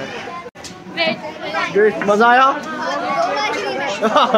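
Speech only: people talking and answering, several voices at once, with a brief sudden cut-out about half a second in.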